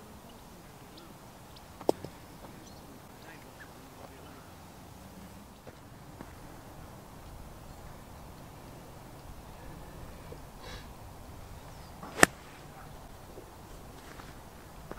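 Two golf shots, each a single sharp click of a club striking the ball. The first comes about two seconds in, and the louder, crisper iron strike comes near the end.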